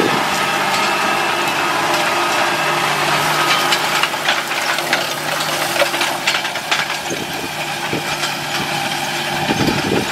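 A John Deere 8R tractor's diesel engine running steadily as it pulls a Kinze planter through a field. Short clicks and rattles from the planter's row units come through in the middle as they pass close by.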